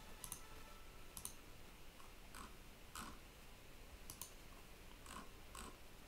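Faint, scattered clicks from working a computer's mouse and keyboard, about seven over a few seconds.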